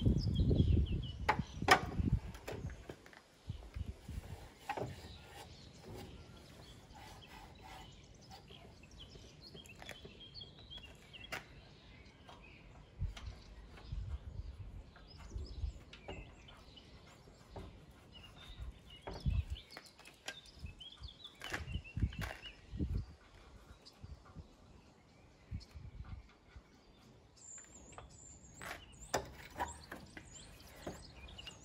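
Scattered clicks and knocks of a metal tailgate flap being handled and offered up to the back of a Land Rover Series 3, with a low rumble in the first two seconds. Birds chirp in the background.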